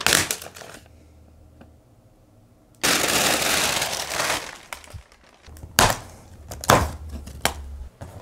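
Packaging being stripped off a large boxed screen: a brief crinkle, then a long stretch of rustling and tearing, followed by two sharp knocks near the end.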